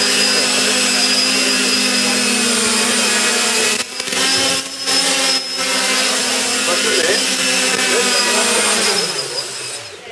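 Electric motors and propellers of a quadcopter drone whirring steadily as it hovers, with a few brief dips in level about four to five and a half seconds in. Near the end the whir falls in pitch and fades as the motors are throttled down.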